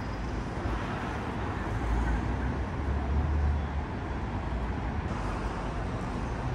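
City street ambience: steady traffic noise with a low rumble that grows louder around the middle.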